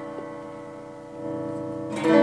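Electric guitar chord (Donner DST-152R) ringing out through an amp and slowly fading, then swelling louder about a second in as the guitar's volume knob is turned up. The volume control only starts raising the level from about 5 upward.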